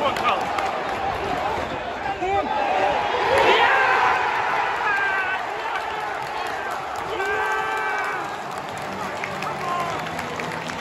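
Football stadium home crowd cheering and shouting as their team scores a goal, with voices yelling close to the microphone. The roar swells to a peak a few seconds in and then eases.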